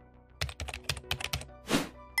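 Computer-keyboard typing sound effect: a quick run of about ten key clicks lasting about a second, then a short rush of noise, over faint background music.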